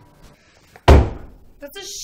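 A door slammed shut once, about a second in: a single loud bang that dies away quickly.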